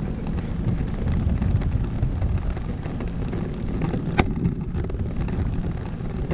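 Wind buffeting the microphone of a camera carried aloft on a parasail, a steady low rumble, with one sharp click about four seconds in.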